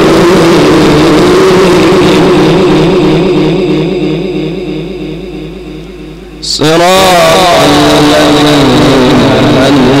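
A male Quran reciter chanting into a microphone. He holds one long melodic note that slowly fades, then about two-thirds of the way through begins a new phrase with wavering, ornamented pitch.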